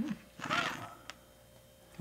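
A short murmured voice, then a single light click of a score marker set down on the game board, over quiet room tone.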